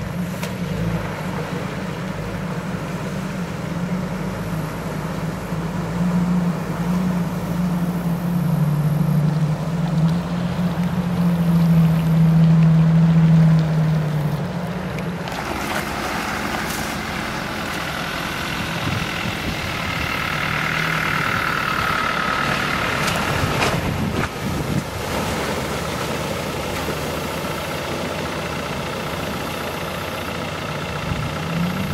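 Jeep Wrangler engines running at slow off-road crawling speed, the engine note rising and getting louder from about eight to fourteen seconds in. About halfway through the sound changes suddenly to a closer, noisier vehicle sound.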